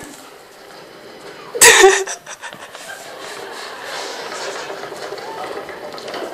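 A woman laughing, with one short, loud burst of laughter about two seconds in, followed by steady background noise.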